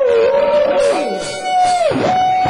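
Male rock singer holding long, high wailing notes over a live band. The first note dips and ends about a second in; a higher note is then held and falls away just before the end.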